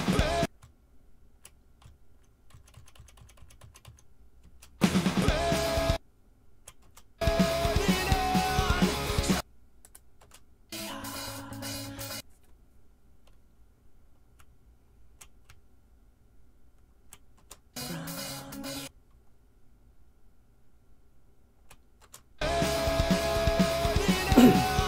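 Short snatches of a drum cover recording, drum kit with a rock backing track, played back and stopped abruptly about six times, two of them quieter. In the gaps, computer keyboard keys click as the audio clip is nudged into sync with the video.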